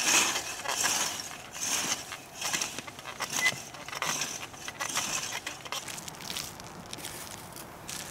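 Cultivator teeth of a Planet Junior wheel hoe scraping and crunching through garden soil in repeated push strokes, roughly one a second, growing fainter toward the end.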